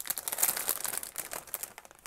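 Clear plastic bag crinkling as it is handled and pulled open, a dense run of irregular crackles that is busiest in the first second and thins out toward the end.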